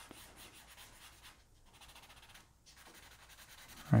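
Paper blending stump rubbed back and forth over pencil shading on paper: a faint, scratchy rubbing in short repeated strokes.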